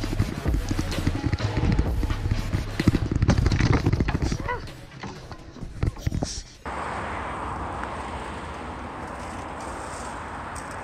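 Helmet-camera sound of a mountain bike rattling and knocking hard over a rough dirt trail, ending in a crash about six seconds in. It then cuts abruptly to a steady rushing noise.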